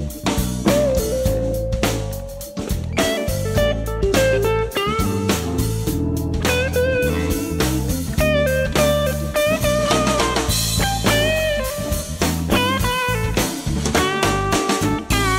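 1999 Fender Custom Shop '63 Telecaster electric guitar played through an original 1963 Fender Vibroverb amp, picking single-note lead lines with frequent string bends. Underneath are a steady drum beat and bass notes.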